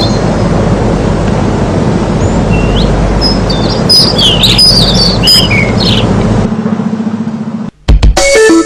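Small birds chirping in quick, rising and falling calls over a steady low rumble. Near the end the rumble turns into a fast, even throb and then cuts off abruptly.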